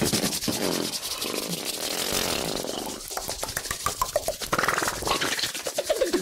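Fast, aggressive ASMR hand sounds: palms and fingers rubbing and swishing right at a foam-covered microphone in a rapid run of scratchy strokes, several a second, mixed with short mouth noises.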